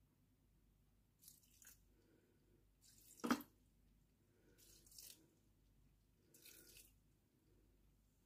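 Faint, short splashes of pickle juice poured into a Thermomix mixing bowl, four small spurts spaced out, with one brief louder click a little after three seconds.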